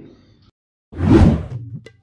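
A whoosh sound effect swells about a second in, after a moment of dead silence, marking a scene transition. A few faint clicks follow near the end.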